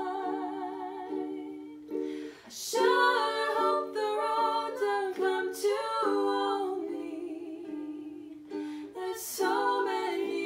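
Ukulele strummed while women sing a slow, gentle song.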